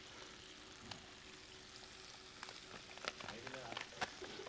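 Faint sizzle of catfish fillets and lentil patties frying in pans on a stovetop, with a few small ticks in the second half.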